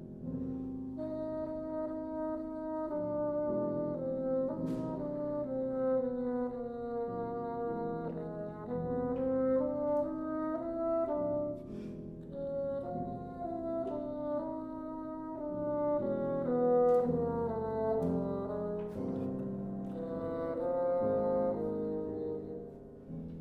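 Bassoon playing a flowing melodic line of changing notes over piano accompaniment, in swelling and easing phrases.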